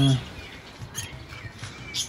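Small parrots, lovebirds, giving a few short, high chirps, about a second in and again near the end.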